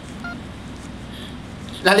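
A pause in a man's talk over a microphone: steady low room hiss of the hall, with one brief faint electronic beep about a quarter second in. His voice comes back near the end.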